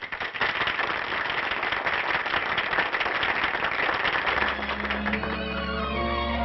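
Studio audience applauding. About four seconds in, an orchestra starts an introduction with held string and bass notes.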